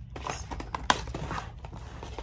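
Cardboard and plastic toy packaging being handled: scattered rustles and small taps, with one sharp click just under a second in.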